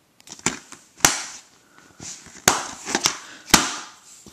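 Plastic DVD case being handled and snapped shut: a run of about five sharp plastic clicks, the loudest about three and a half seconds in.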